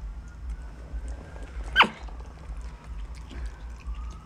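Black-capped capuchin monkey fussing: one short, high call that drops sharply in pitch, a little under two seconds in.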